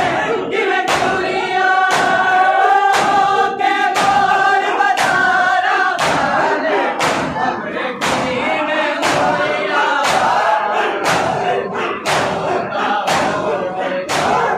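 A crowd of men chanting a noha together while beating their chests in matam, the slaps landing in a steady rhythm. The chant holds long notes for the first six seconds or so, then turns rougher and more broken.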